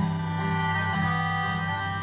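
Live acoustic band playing an instrumental gap between sung lines: upright bass and acoustic guitar under steady held melody notes, with a few light plucks.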